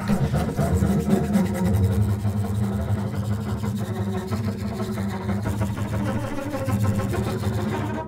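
Double bass played with the bow in its low register: a steady, buzzing drone that holds on low notes, with a grainy rasp from the bow.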